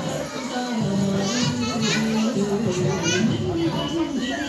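A group of children singing together in long held notes.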